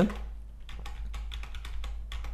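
Computer keyboard keystrokes: a quick, irregular run of taps over a faint low steady hum.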